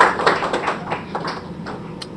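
A small group clapping, about four claps a second, fading away over the first second and a half.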